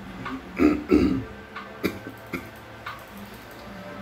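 Two short throaty vocal sounds from a man, close together about a second in, over faint steady background music; a couple of light clicks follow.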